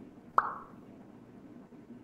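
A single short click-pop, a sharp tick with a brief ringing tone that dies away quickly, just under half a second in, over a faint steady background hum.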